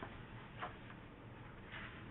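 Faint scratching of a drawing tool on paper while colouring in: a couple of short, irregular strokes.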